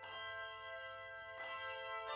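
Handbell choir ringing chords, one struck at the start and another about one and a half seconds in, each left to ring on.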